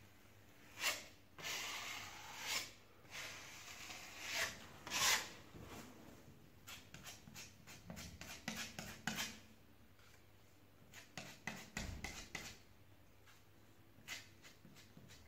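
Hand scraper spreading and smoothing ready-mixed plaster skim over a crack in a plastered wall: a series of scraping strokes, a few longer passes in the first five seconds, then quicker short scrapes.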